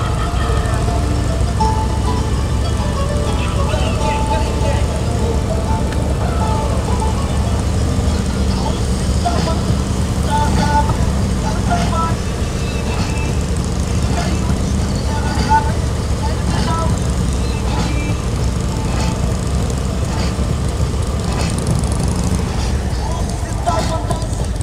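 Cruiser motorcycle engine running and wind rushing past the microphone while riding at road speed, a steady low rumble. Music with a voice is heard faintly over it.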